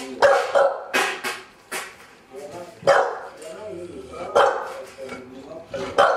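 A dog barking repeatedly: several short barks, some in quick pairs, others a second or more apart.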